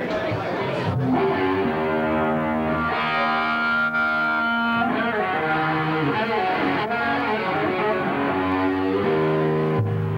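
Distorted electric guitars through stage amplifiers sounding long held notes and chords, changing pitch every second or so: loose playing before the first song of the set. Crowd chatter runs underneath.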